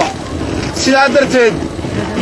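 A man speaking into a handheld microphone: a short phrase about a second in, between pauses filled with a low rumble.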